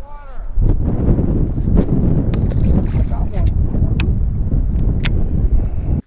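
Wind buffeting the camera's microphone: a loud, gusting low rumble, broken by a few sharp clicks.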